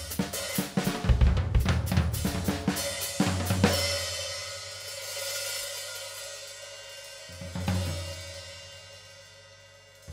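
Drum kit played in a dense flurry of snare, bass drum and cymbal hits, then a cymbal crash about four seconds in that is left to ring and fade. A second crash comes near eight seconds, and each crash has a low electric bass note held under it as the sound dies away toward the end.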